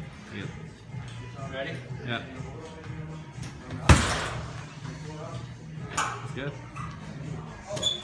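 A kick landing hard on a heavy punching bag about four seconds in, one loud thud, with fainter knocks later. Background music plays throughout.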